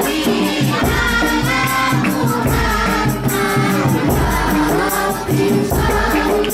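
Group of voices singing sholawat, Islamic devotional song, to a steady beat from a jidor bass drum and jingling frame drums.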